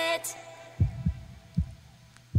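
A K-pop track's last sung note cuts off and fades. Then comes a heartbeat sound effect: low, soft thumps in a heartbeat rhythm, over a faint steady hum.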